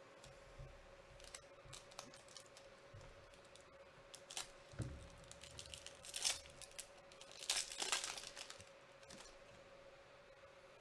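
Foil wrapper of a Bowman Chrome baseball card pack being torn open and crinkled by hand. Scattered small crackles build to the loudest tearing and crinkling about six seconds in and again around eight seconds.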